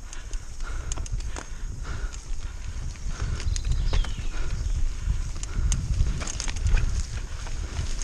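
Mountain bike riding fast down a dirt singletrack: a low rumble of tyres and wind on the microphone, with irregular knocks and rattles of the chain and frame over bumps.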